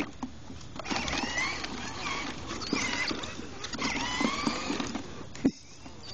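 Electric motor and gearbox of a battery-powered ride-on toy quad whining as it drives along concrete, the whine rising and falling in pitch with its speed. It cuts off with a click about five and a half seconds in as the drive stops.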